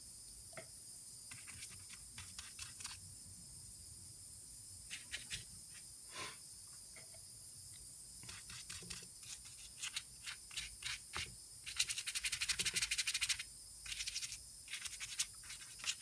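Paintbrush scrubbing and dabbing soapy water onto an aluminium engine crankcase: short, sharp bristly scratching strokes, scattered at first, then a quick run of rapid strokes about twelve seconds in, and more near the end.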